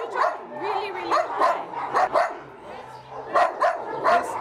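Dogs in kennels barking over and over in short, sharp barks, with a brief lull about two and a half seconds in.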